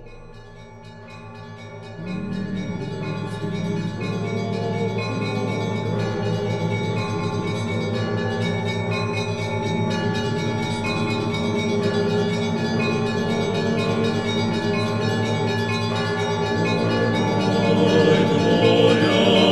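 Church bells ringing in a continuous, fast peal of many overlapping strikes, stepping up in loudness about two seconds in.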